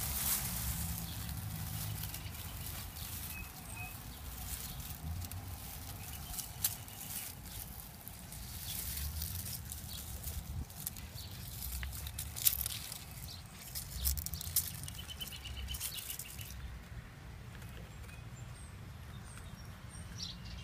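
Dry leaves rustling and crackling in irregular clicks over a low rumble, with a few faint bird chirps; the crackling dies away about three-quarters of the way through.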